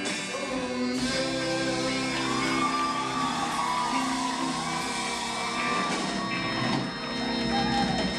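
Live rock band playing: electric guitar, drum kit and keyboard, with sung vocals over them. A held, wavering sung note runs through the middle.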